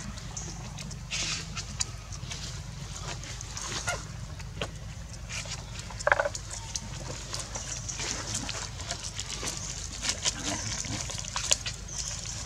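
Monkeys lapping and slurping milk from a plastic plate: a run of small, irregular wet clicks over a steady low hum, with one brief sharper sound about six seconds in.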